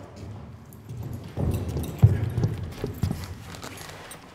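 Work boots stepping on a concrete floor close to a microphone at floor level: a few heavy footfalls, the loudest about two seconds in.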